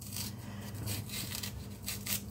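Small kitchen knife scraping and cutting the thick peel off a green matoke (cooking banana), in repeated short rasping strokes about three a second. The knife is one the cook finds not good for the job.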